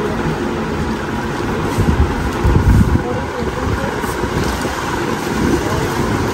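Busy shop ambience: indistinct background voices over a steady low rumble, which swells louder for about a second around two to three seconds in.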